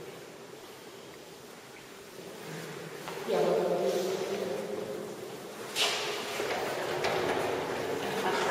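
Indistinct voices without clear words, starting a few seconds in, with one sharp knock about six seconds in.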